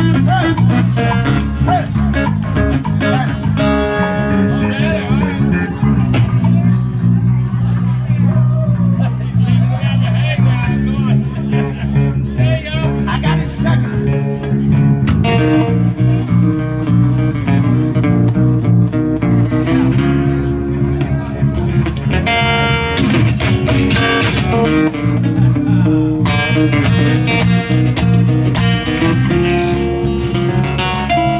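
Live acoustic band playing an instrumental passage: acoustic guitars strumming and picking over a bass guitar line.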